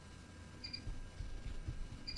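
A pause in the speech: faint low background noise, with one brief, faint, high chirp about a second in.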